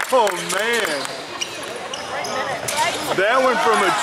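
Basketball bouncing on a hardwood gym floor during play, short sharp knocks, mixed with shouting voices from players and spectators.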